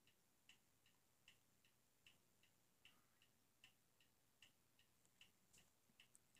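Near silence with faint, regular ticking, about two and a half ticks a second.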